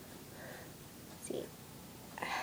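Faint, soft sounds of hands working fluffy polyester fiberfill stuffing into a felt plushie, with a brief quiet vocal sound a little over a second in.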